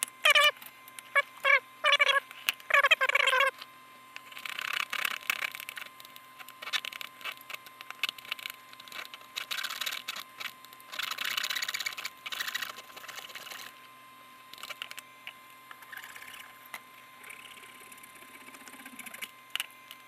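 A small hand saw cutting through a carbon-fibre arrow shaft in a plastic miter box, a run of rasping strokes that grows loudest partway through and then turns to fainter scraping. A few short, high squeaks come first.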